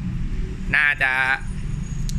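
A man's brief spoken remark over a steady low background rumble.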